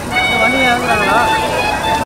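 A person's voice, its pitch wavering, over a few faint steady high tones, with no beat or bass underneath.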